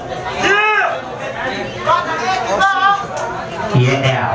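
Chatter of many people talking at once in a crowded bar, with one louder voice rising and falling in pitch about half a second in.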